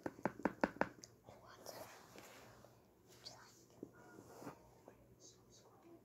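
A quick run of about six sharp taps in the first second, then soft whispering with small handling clicks close to the microphone.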